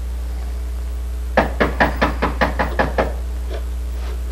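Rapid knocking on a door: a quick run of about eight knocks starting about a second and a half in, then one lighter knock, over a steady low hum.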